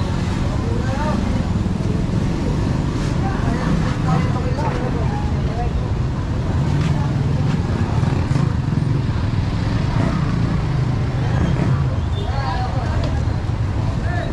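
Street traffic: a steady low rumble of vehicle engines as cars drive past, with indistinct voices of people nearby.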